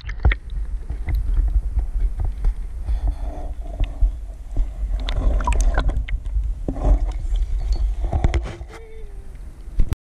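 Water sloshing and gurgling around an action camera held at the waterline and dipped under, with a heavy low rumble and irregular splashy knocks as the water washes over the housing.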